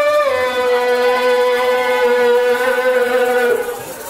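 A man's voice through a microphone and PA holds one long sung note. The pitch dips slightly about a quarter second in, then stays steady before fading out about half a second before the end.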